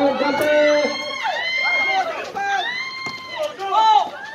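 Voices shouting and calling out during a basketball game in play: a run of short rising-and-falling cries and held calls.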